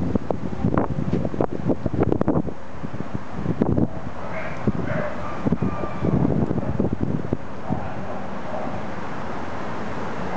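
Wind buffeting the microphone in irregular low rumbling gusts, with a few faint high whines about halfway through.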